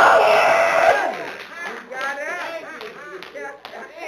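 A man's voice holds a drawn-out, half-sung shouted word for about a second. Then come quieter, scattered voices calling out and a few hand claps.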